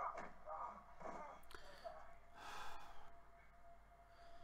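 Faint breathing, sighs and gasps from a person, with a thin steady hum setting in about halfway.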